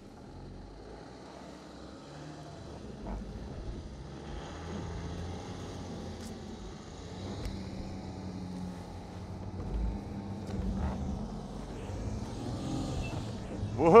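Volkswagen Touareg SUV engine and drivetrain pulling up a steep grassy slope in its sand off-road mode. The low hum grows steadily louder as the vehicle climbs and crests.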